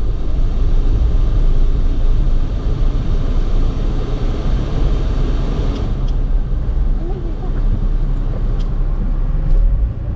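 A car's steady low engine and road rumble heard from inside the cabin as it pulls up at a toll gate. The higher road noise eases after about six seconds, with a few faint ticks.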